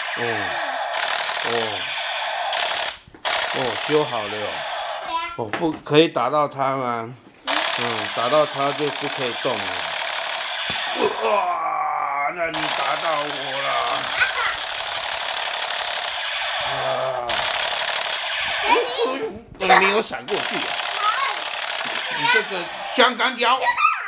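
Battery-powered light-up toy gun firing its electronic rapid-fire rattle through a small, tinny speaker. It comes in long bursts of a few seconds each, with short pauses between them.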